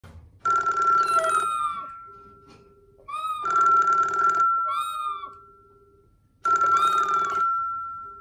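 Push-button telephone ringing in three one-second rings about three seconds apart, each fading away. Short chirping calls from a chattering lory come between and over the rings.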